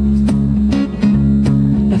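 Live band playing an instrumental bar between sung lines: strummed acoustic guitar and electric guitar over bass and drums, with a steady beat.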